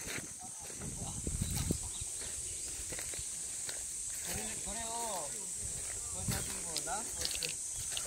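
A steady high-pitched hiss from outdoor ambience throughout, with footsteps on a dirt path in the first two seconds. Distant voices talk briefly about halfway through and again near the end.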